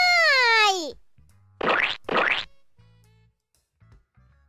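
A drawn-out cartoon cry of pain, "aaaiii!", that rises and then falls in pitch over about a second. About two seconds in come two short noisy bursts, over faint background music.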